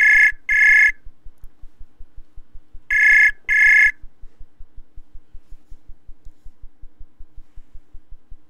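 Ringing tone of an outgoing web-browser audio call, still waiting to be answered. It sounds twice, about three seconds apart, and each ring is a pair of short, high electronic beeps.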